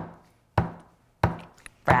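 Opening drum beat of an intro music track: three hits about two thirds of a second apart, each with a low boom that dies away quickly.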